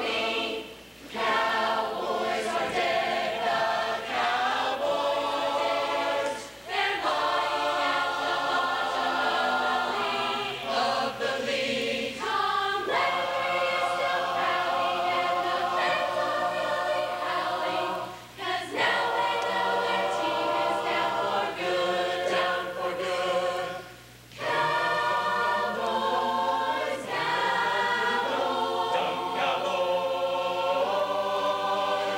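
Large mixed choir singing a cappella in held chords, with short breaks between phrases every five or six seconds.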